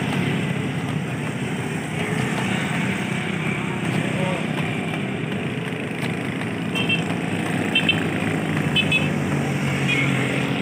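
Road traffic: a steady hum of passing cars and motorcycle engines. Near the end come short, high clinks about once a second.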